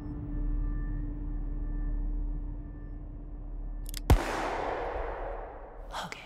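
Film score drone with a held low tone, broken about four seconds in by a single loud gunshot that rings out and fades slowly over the next two seconds.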